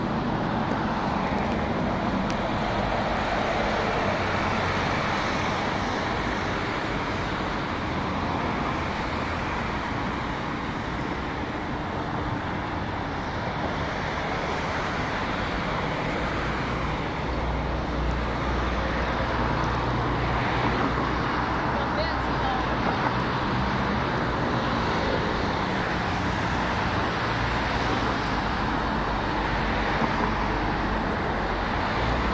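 Steady road traffic noise from a busy multi-lane city road, a continuous wash of passing vehicles with a deeper low rumble building from about halfway through.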